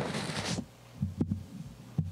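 Handling noise: a brief rustling hiss lasting about half a second, then a few soft low thumps and a click about a second in, over a steady low hum.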